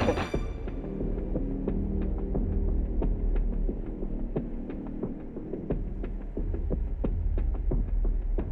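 Low throbbing drone of a film underscore, with held low tones and scattered faint clicks.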